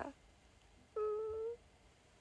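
A woman's brief hummed "mm" ("うん") held on one steady high pitch for about half a second, with quiet room tone around it.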